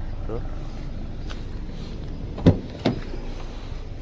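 Rear side door of a Honda Mobilio being opened: two sharp clicks from the handle and latch, less than half a second apart, about halfway through, over a low steady hum.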